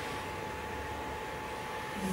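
Steady room tone: an even low hiss with a faint, thin steady whine running through it.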